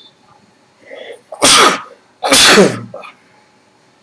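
A person sneezing twice in quick succession, both sneezes loud and about a second apart, after a short intake of breath.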